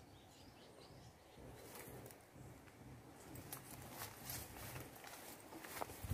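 Near silence: faint outdoor ambience with a few soft clicks and rustles, busier near the end as coconut palm fronds brush past the camera.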